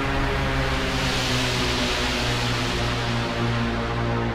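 Electronic trailer score: a steady low drone with a hissing swell that builds and fades in the middle.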